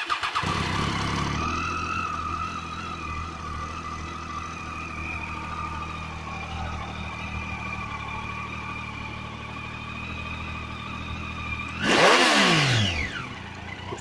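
Triumph Street Triple 675's inline three-cylinder engine on its stock exhaust, starting and settling into a steady idle. Near the end, one quick throttle blip: the pitch rises sharply, is the loudest moment, and falls back to idle.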